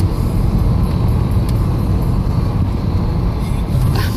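Steady road and engine noise heard from inside the cabin of a moving car, a low, even rumble.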